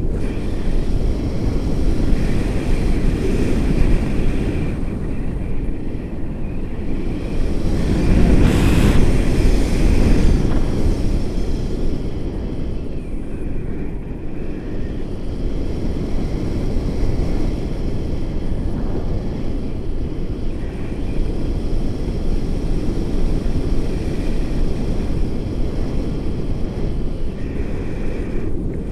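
Wind rushing over a camera microphone in paraglider flight, a steady low rumble that swells for a couple of seconds about eight seconds in.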